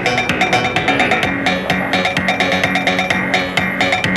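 Music playing from a cassette tape through the built-in speakers of a JVC RC-838JW boombox: a track with a steady drum beat.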